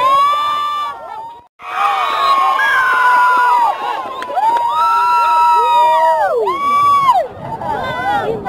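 Spectators at an amateur football match cheering and yelling, with long drawn-out high-pitched shouts. The sound breaks off briefly about a second and a half in.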